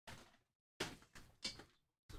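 Trading-card packs and boxes being handled on a table: four short bursts of rustling and scraping, each starting sharply and fading within half a second, with silence between.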